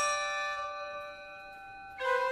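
A struck bell ringing and slowly dying away over held notes on a medieval portative organ.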